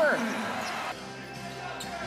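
Basketball arena sound on a game broadcast: crowd noise with a steady hum that changes at a cut about a second in. A couple of sharp knocks near the end fit a basketball bouncing on the hardwood court.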